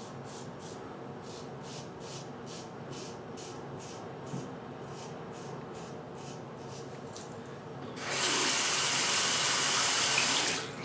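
Gem Jr single-edge safety razor scraping through lathered stubble in short, even strokes, about three a second. About eight seconds in, a tap comes on and water runs loudly into the sink.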